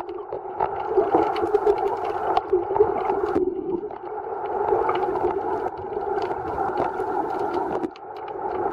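Sound heard underwater: a steady, muffled hum with scattered faint clicks and crackles.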